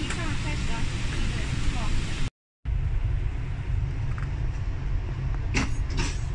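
Steady low rumble inside a GO Transit bilevel passenger coach under way, with voices over it in the first two seconds. The sound cuts out for a moment a little over two seconds in, the rumble comes back, and a click sounds near the end.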